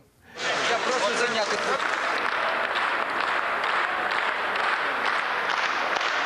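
Large hall of people applauding and cheering a passed vote, with shouting voices over the applause in the first second or so. The sound starts suddenly about a third of a second in.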